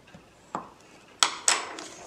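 Bone folder set down on a plastic craft board: a light tap, then two sharp clicks about a quarter second apart, followed by the soft rustle of folded cardstock being slid across the board.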